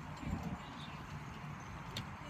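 Show-jumping horse's hoofbeats: a few dull thuds on the arena footing, with a sharp click near the end.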